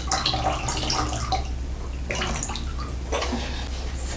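Sports drink poured from a plastic Powerade bottle into red plastic cups, the liquid splashing into the cups in a few separate pours.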